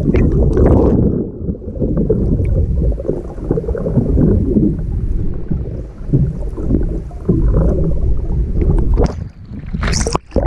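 Muffled, low rumbling and gurgling of water moving around a camera held underwater, with a brief splash near the end as it breaks the surface.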